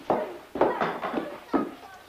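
A metal cooking pot clattering against a kitchen sink as food is knocked and scraped out of it, in about four sharp knocks.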